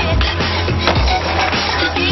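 Soundtrack music with a steady beat, mixed with the sound of a skateboard, including a sharp clatter of the board on concrete about a second in as the skater bails.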